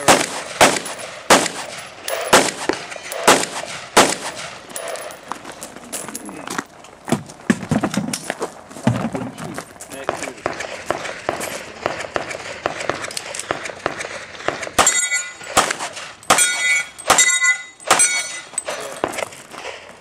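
Gunshots during a timed competition stage run: a string of shots about every half second in the first few seconds, fainter shots spaced irregularly through the middle, then another string near the end with a metallic ringing that hangs on after several of the shots.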